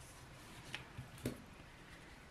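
Faint handling sounds of hands working a crochet piece with a yarn needle and small scissors: a few soft clicks and taps over a low room hum.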